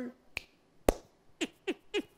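A singer's hand claps keeping time between sung lines: a light clap, then a sharp louder clap about half a second later. Near the end come a few quick falling vocal glides.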